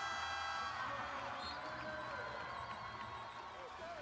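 Steady held tones, slowly fading and with a slight waver in the upper tones, over faint arena crowd noise.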